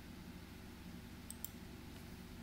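Two faint computer mouse clicks in quick succession, a little past halfway, over a steady low hum.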